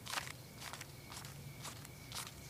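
Faint, irregular rustles and soft taps, about six of them, of paper banknotes being handled, over a low steady hum.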